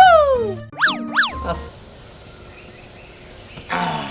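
Cartoon-style comedy sound effects: a loud falling, whistle-like glide at the start, then two quick rising-and-falling boings about a second in. A brief voice comes in near the end.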